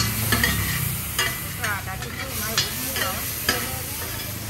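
Metal spatula and ladle scraping and clinking on a large flat iron pan over a steady frying sizzle, with a few sharp scrapes spaced about half a second to a second apart.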